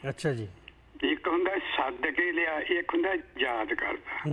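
A man's voice talking, thin and narrow in tone as if carried over a phone or remote call line, with a short pause near the start.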